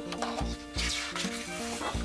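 The paper page of a hardcover picture book rustling as it is turned, over soft background music with steady notes and bass pulses.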